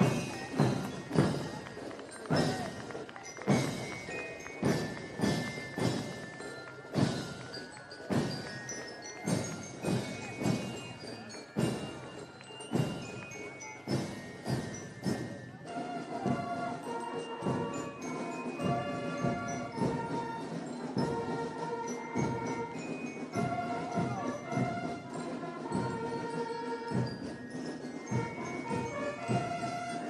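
Marching band of snare and bass drums beating out a loud cadence. About halfway through, brass horns come in playing a melody over the drums.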